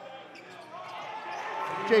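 Basketball game sound in a gymnasium: crowd and court noise that swells gradually, with the ball bouncing on the hardwood.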